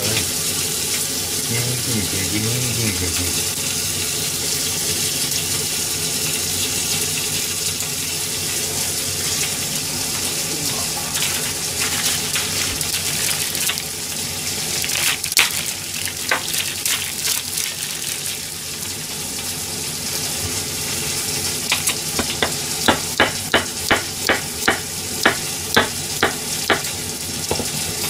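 Ground meat frying over low heat in a pan: a steady sizzle as its fat renders out. Near the end a knife chops on a cutting board, about three strokes a second.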